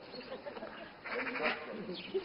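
A sheep or goat-type bleat: one quavering call about a second in, lasting about half a second, with other faint calls and sounds around it.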